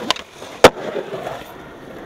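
Skateboard landing a flip trick on concrete: a light click, then about half a second later one loud, sharp clack of the deck and wheels hitting the ground, followed by urethane wheels rolling on concrete.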